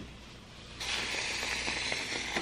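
Used play sand pouring out of a tipped plastic sandbox tub into a garbage bin: a steady hiss that starts about a second in.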